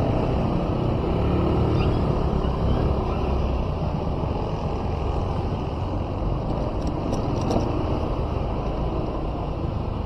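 Steady low rumble of a vehicle's engine and road noise, riding slowly in street traffic, with a few faint clicks about seven seconds in.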